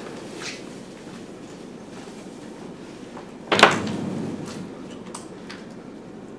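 A single sharp knock about three and a half seconds in, with a few fainter clicks around it, over steady room noise.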